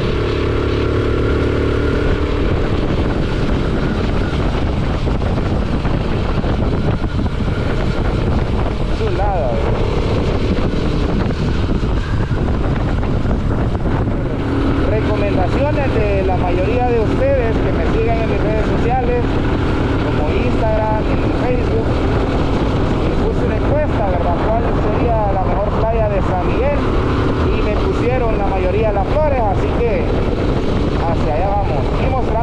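Motorcycle riding along at road speed: the engine running steadily under heavy wind noise on the microphone.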